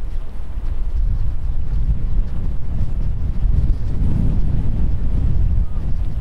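Wind buffeting the microphone: a loud, gusty low rumble that swells about four seconds in.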